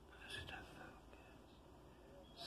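Near silence, with a brief faint voice, like a whisper, about half a second in.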